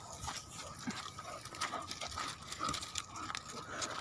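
Two leashed German Shepherds walking and pulling on a sandy dirt track: quiet, irregular scuffs and taps of paws and footsteps, with faint dog sounds.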